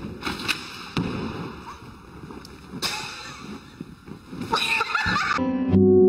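Thuds of a person jumping off a gym springboard and landing, over a noisy room, with a short high-pitched voice about four and a half seconds in. Music starts near the end.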